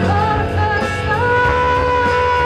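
Live rock band playing, with drum kit and cymbals keeping a steady beat under bass, and a lead melody that steps up and holds one long note about a second in.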